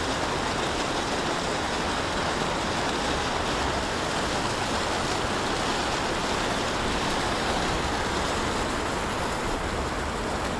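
Fountain water jets splashing into a shallow basin: a steady rush of water.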